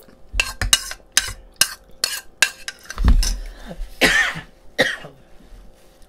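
Spoons clinking against ceramic bowls in a run of sharp, irregular taps while eating. There is a low thud about three seconds in and a loud breathy burst about a second later.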